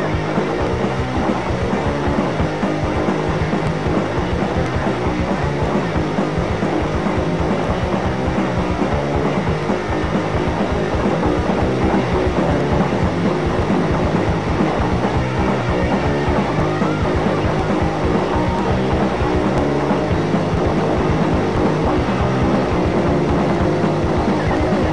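Hardcore punk band playing, with electric guitar, bass and fast, dense drumming, on a 1983 demo recording.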